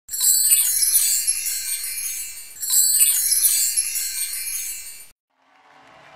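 Intro sound effect of shimmering, high-pitched bell-like chimes in two swells about two and a half seconds apart, each fading, cut off suddenly about five seconds in.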